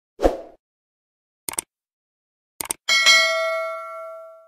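Subscribe-button animation sound effects: a short thump at the start, then brief mouse-click sounds, then a bright notification-bell ding about three seconds in that rings on and fades away slowly.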